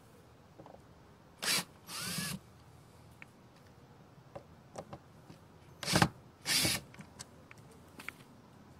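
Cordless drill-driver run in short bursts to back the lid screws out of a PVC junction box. It runs in two pairs of brief bursts, about four seconds apart.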